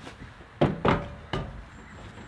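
Rubber work boots stepping up onto a Suzuki Carry mini truck's newly mounted aftermarket front bumper: three dull thumps within about a second as a man's full weight goes onto it, testing that the bumper is mounted solidly.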